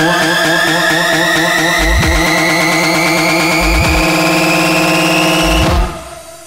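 Electronic dance music build-up: a synthesizer tone climbs steadily in pitch over sustained chords, with a deep bass hit about every two seconds. It all cuts off suddenly near the end.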